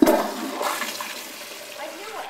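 Kohler Highline Pressure Lite toilet with a Sloan Flushmate pressure-assist vessel flushing: a loud rush of water and air that starts suddenly, is strongest at the very start and then slowly tapers off.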